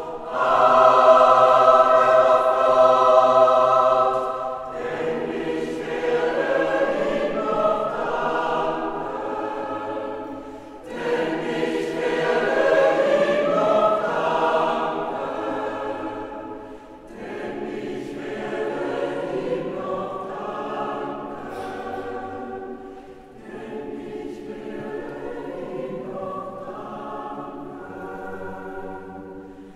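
Mixed choir singing sacred music a cappella in a church, in several long phrases with brief breaks between them; the singing is loudest at the start and grows softer toward the end.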